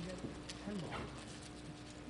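Quiet auditorium between remarks: a faint steady hum, a few faint voices and a single sharp knock about half a second in.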